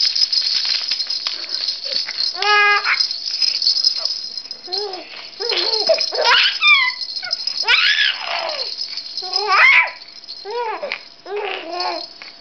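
A rattle inside a plush toy, shaken by hand without a break, making a steady rattling hiss that stops about ten seconds in. Over it, a young baby coos and squeals, then babbles after the rattling stops.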